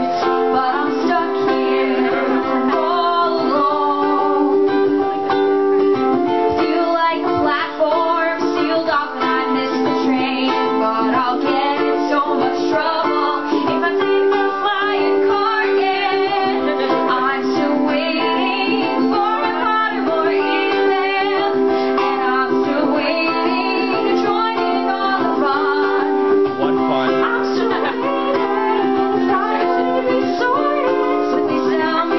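A woman singing live to her own strummed ukulele, with steady chord strumming throughout.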